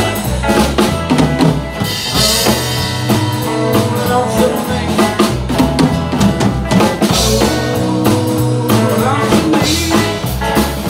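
Live country band playing an instrumental break on electric guitars, bass and drum kit, with a steady beat and cymbal crashes about two seconds in and again around seven seconds.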